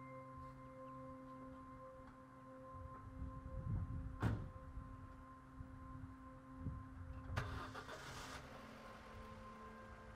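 An Opel hatchback's driver door shuts with a sharp knock about four seconds in, followed by a smaller thump; then the engine is started, a noisy burst lasting about a second near the end, over a soft sustained musical drone.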